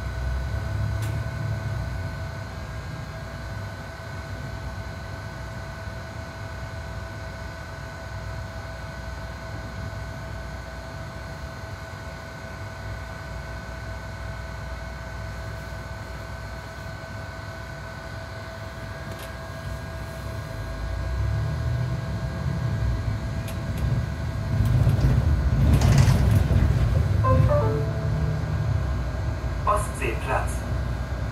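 Cabin sound of a Mercedes-Benz Citaro C2 G articulated city bus: low engine rumble with a steady whine while it stands waiting. The sound grows louder from about two-thirds of the way in as the bus pulls away and accelerates.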